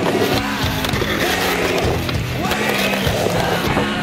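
Skateboard wheels rolling on a concrete sidewalk, with sharp knocks from the board, mixed with loud music.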